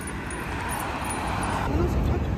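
Road traffic noise: a vehicle goes by on the road, its hiss swelling and fading over about a second, over a steady low rumble. A faint voice comes in near the end.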